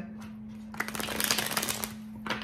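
A deck of tarot cards being shuffled: a quick run of fast, dense card flicks starting about a third of the way in and lasting about a second, over a steady low hum.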